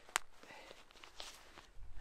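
Quiet handling of a poncho and its Dyneema cord: faint rustling of fabric and cord, with one sharp click just after the start.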